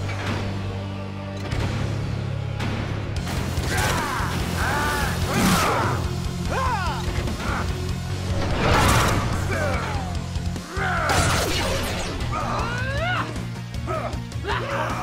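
Action-scene soundtrack: dramatic music under a series of loud crash and impact sound effects, several big hits spaced two to three seconds apart, with rising and falling squeals between them.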